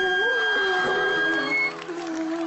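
Violin and daegeum (Korean bamboo flute) playing held notes together, the lower line wavering in pitch. The notes break off about one and a half seconds in.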